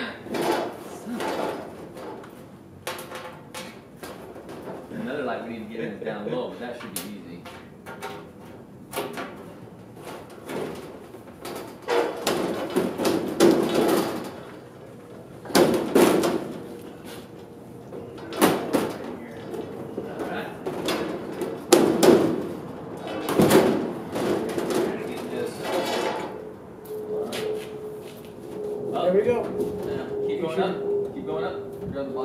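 Sheet-metal trailer siding panel being pushed and worked into place by hand: scattered knocks, bangs and rattles of the thin metal, with indistinct voices and a faint steady hum that comes in about halfway.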